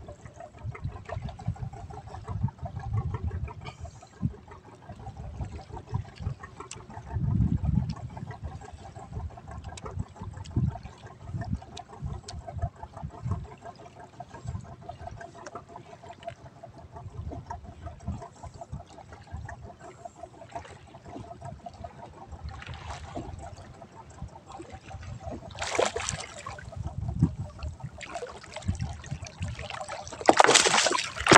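Seawater sloshing and trickling against a small boat's hull, with gusts of wind rumbling on the microphone. A louder splash comes about 26 seconds in.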